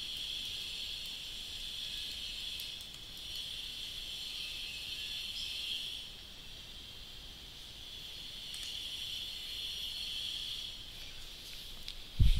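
Steady high-pitched background hiss that weakens for a couple of seconds past the middle, with a few faint computer keyboard clicks.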